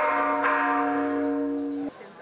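Traditional Chinese ritual music for a Confucius memorial rite: one long held note that fades slightly and cuts off suddenly near the end.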